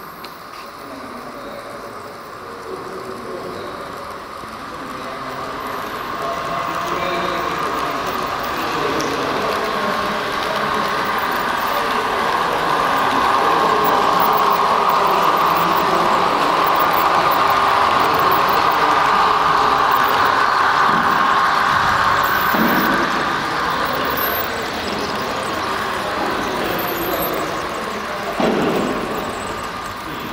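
H0 scale model electric locomotive and passenger coaches running on the layout track, a steady whirring and rolling that grows louder toward the middle as the train passes close, then eases off.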